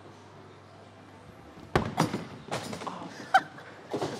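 Bowling balls released together and thudding onto the lane: two heavy thuds a little under two seconds in, close together, followed by more irregular knocks as the balls roll off.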